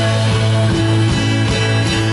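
A rock band playing live: electric and acoustic guitars over electric bass and a drum kit, with a held low bass note and a steady drum beat.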